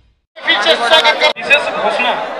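Speech: a voice talking, beginning just after a moment of silence at the very start.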